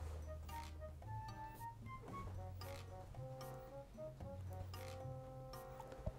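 Soft background music: a simple melody of short held notes over a steady bass line.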